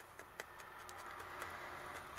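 Faint handling sounds of wool roving being pressed and wrapped by hand over a felted wool body, with a couple of light ticks in the first half second.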